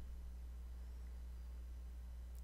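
Faint steady low electrical hum with a faint hiss and nothing else: room tone.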